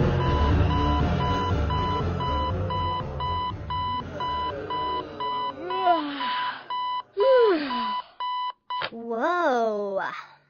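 Digital alarm clock beeping in a steady run of evenly spaced high electronic beeps that cut off near the end, while music underneath fades out. In the second half a cartoon girl's voice lets out three drawn-out cries that rise and fall in pitch.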